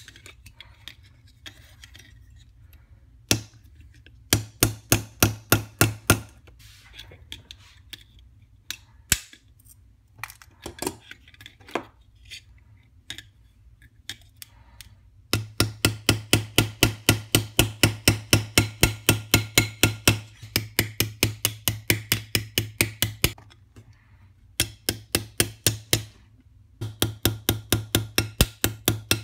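Small hammer tapping a brass rod on a steel bench anvil, peening its end over into a rivet head. The strikes are quick and metallic, about five a second, in runs with pauses between. The longest run starts about halfway through.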